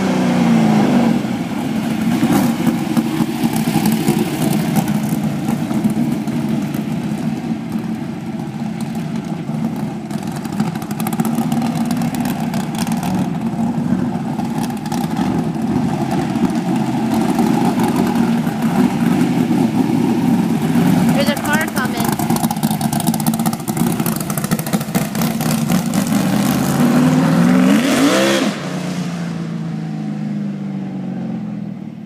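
Asphalt modified race car's engine running as it is driven around, its pitch falling at the start, wavering with the throttle, then climbing steeply in a hard acceleration near the end before dropping off.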